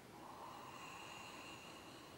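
Near silence with a faint breath on the microphone, lasting about a second and a half.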